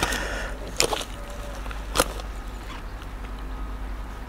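Fishing tackle being handled at the landing net: two sharp clicks about a second apart, over low steady outdoor background noise.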